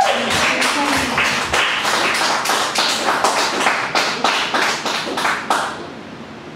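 A small audience applauding at the end of a song: many separate hand claps, irregular and close together, dying away shortly before the end.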